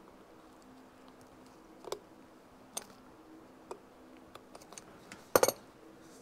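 Pliers crimping the metal bezel of a vintage tachometer back down: a few sharp, quiet metal clicks about a second apart. Near the end comes a louder rattle of clicks as the gauge is handled.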